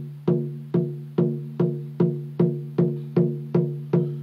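A large drum struck in a steady beat, about two and a half strokes a second. Each stroke rings with a low, clear pitch that fades before the next, as an introduction to a song.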